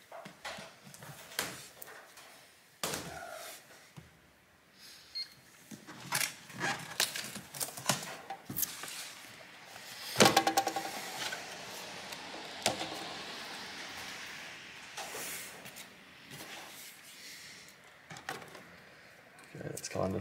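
Workbench handling noises: scattered knocks, taps and clatter as laptop display parts are moved and the work table is turned, with a louder run of clattering about halfway through.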